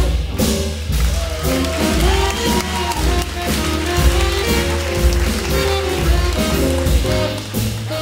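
Jazz big band playing live: a reed section of clarinets and saxophones plays held and sliding lines over bass and drums, with a steady beat.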